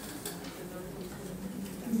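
Low room noise with faint, indistinct voices in a hall.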